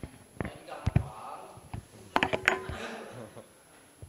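Faint murmured voices and whispering, with a few sharp clicks.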